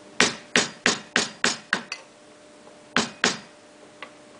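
Hammer blows on a wheelbarrow's frame: a quick run of about six strikes, a pause, then two more strikes.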